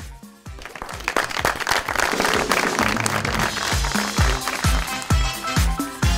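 Applause from a small studio group, mixed with music. About four seconds in, the music settles into a steady thudding beat of roughly two strokes a second.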